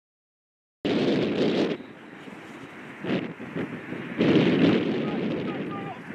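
Outdoor field sound cutting in from silence: wind buffeting the microphone in gusts, with players' voices and a single sharp knock about three seconds in.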